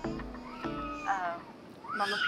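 Soft background music, then a short high-pitched, meow-like call about a second in that falls in pitch.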